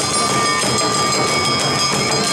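Awa Odori festival band playing: large hand-held drums beaten with sticks in a dense clatter, under a steady high ringing tone.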